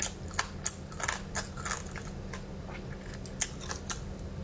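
Close-up eating sounds of someone chewing and sucking glazed meat off the bone, with an irregular run of short, sharp mouth clicks, busiest in the first second and again past three seconds. A steady low hum runs underneath.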